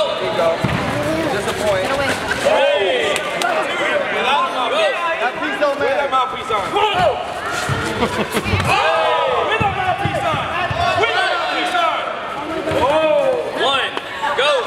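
Point-sparring bout: thumps of fighters' feet and kicks on foam mats, with men shouting instructions throughout.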